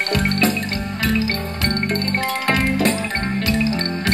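Thai ramwong dance music played by a band over loudspeakers, with a steady beat, a held bass line and a pitched melody.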